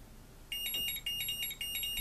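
Tenergy TB6B battery charger's buzzer sounding a rapid electronic beeping alarm in short bursts, starting about half a second in. It signals an input voltage error: the supply voltage has dropped below the charger's 10 V low-input cut-off.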